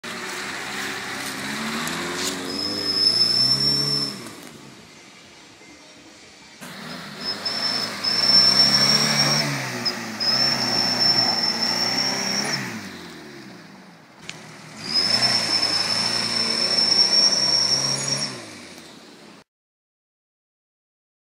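Daihatsu Feroza's four-cylinder engine revving hard under load in three bursts, its pitch rising and falling, as the 4x4 claws up a muddy trail with its wheels spinning. A steady high whine rides over the loudest stretches, and the sound cuts off abruptly near the end.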